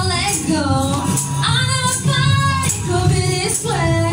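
A woman singing long, bending vowel notes with no clear words over steady instrumental accompaniment with a prominent bass line.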